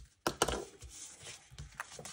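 Paper and cardstock handled on a craft mat: a couple of light taps about half a second in, then soft sliding and rustling as a layout page is turned, with a small click near the end.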